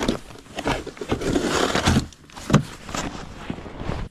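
A hard plastic rod case being latched shut with a sharp click, then gear being handled, with scraping and a few knocks.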